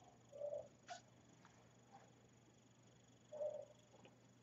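Near silence: quiet room tone with a faint steady hum, broken by two brief faint sounds, one about half a second in and one near the end, and a small click about a second in.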